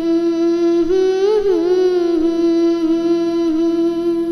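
A singer's voice holding one long, wordless note in the opening of a devotional Hindi bhajan, with a short wavering ornament about a second in, over a faint steady drone.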